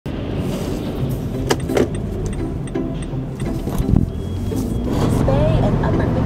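Car driving, heard from inside the cabin: a steady low road and engine rumble, with a few sharp clicks.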